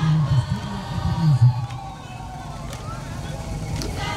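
A deep, indistinct voice for about the first second and a half, over the low running of a slow-moving pickup truck's engine. After that the sound drops to quieter road noise.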